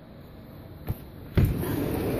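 A sharp click about a second in, then a thud as a door is opened, after which the steady hiss of heavy rain comes in.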